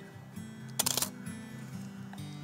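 Pentax 6x7 medium-format SLR firing a shot: a loud, sharp mechanical clack of its large mirror and shutter about a second in.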